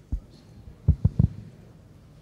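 Four short, dull thumps close to the microphone, one near the start and three in quick succession about a second in. This is typical of a microphone being handled or bumped.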